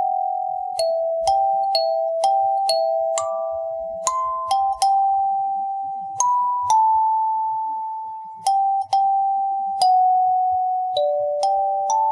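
Background music: a kalimba playing a slow melody of single plucked notes that ring on and fade.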